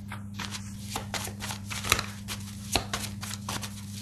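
A deck of tarot cards being shuffled: a quick, irregular run of papery card flicks and slaps, with a couple of sharper ones in the middle, over a steady low hum.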